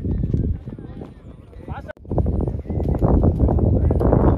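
Wind buffeting the microphone on an open field, a low rumbling rush that gets louder after an abrupt cut about two seconds in.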